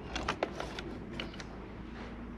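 Wiring loom being handled and tucked into place, giving a handful of light clicks and ticks in the first second and a half, over a low steady hum.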